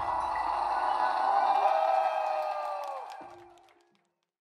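A progressive metalcore band's closing chord ringing out, with a held high note that slides down in pitch about three seconds in, then the sound fades away to silence.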